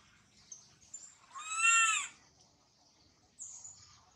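Baby macaque giving one loud cry about halfway through, under a second long, rising and then falling in pitch: an infant's distress call for its absent mother and troop. Faint high chirps come before and after it.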